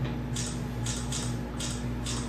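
Camera shutter clicking in a quick series, about two to three clicks a second, over a steady low hum.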